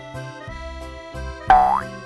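Cheerful children's background music with a steady beat, then about one and a half seconds in a loud cartoon boing sound effect that rises in pitch.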